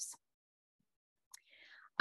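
A pause in a woman's speech: the last word trails off into dead silence, then a small mouth click and a short breath in just before she speaks again.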